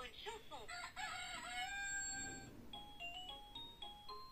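Electronic toy book's small speaker playing farmyard sound effects: a chicken clucking and a rooster crowing. A simple beeping tune of single notes starts near the end.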